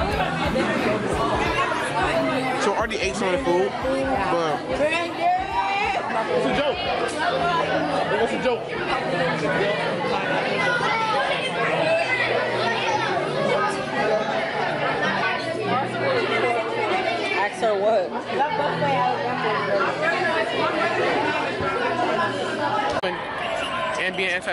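Many people talking at once in a large, echoing dining hall: a steady babble of overlapping voices with no one voice standing out.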